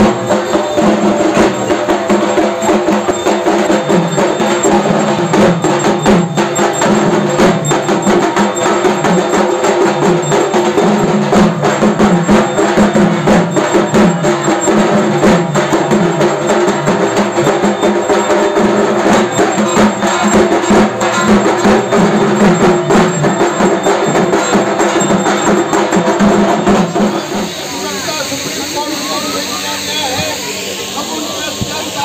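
Music with dense, fast drumming and steady pitched tones, with voices underneath. About 27 seconds in, it gives way to quieter chatter and hiss.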